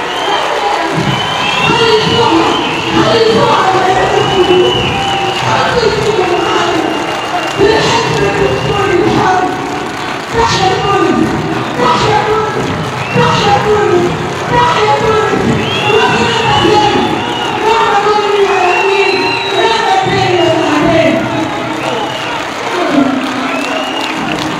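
A large crowd cheering and chanting, many voices shouting together without a break.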